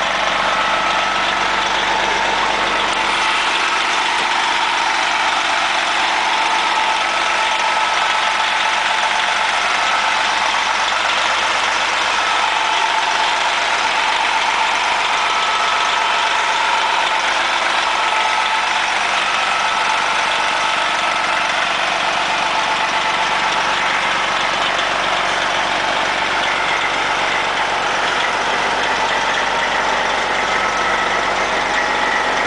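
Detroit Diesel Series 60 12.7-litre turbocharged diesel engine of an MCI 102-DL3 coach idling steadily, heard close up at the rear engine compartment.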